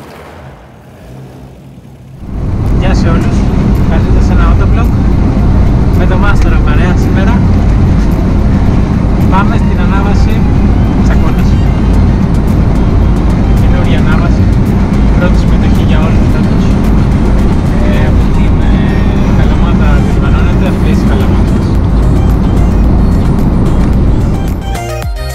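Steady engine and road noise inside a moving car's cabin, beginning suddenly about two seconds in, mixed with talk and background music.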